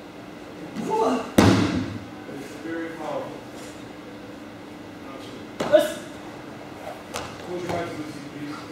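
A body hitting the dojo mat twice, about four seconds apart, as an Aikido partner is thrown and lands in a breakfall. The first landing is the louder, and each one echoes in the large hall.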